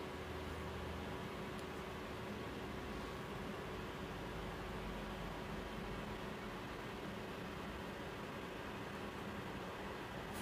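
Steady low hiss of room tone and microphone noise with a faint steady hum underneath.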